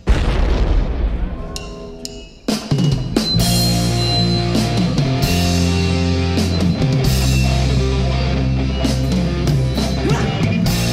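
Live rock band playing with drum kit, electric guitars and bass, no vocals: a loud chord and cymbal hit rings out and fades over the first two seconds, then the full band comes back in loudly about two and a half seconds in and plays on steadily.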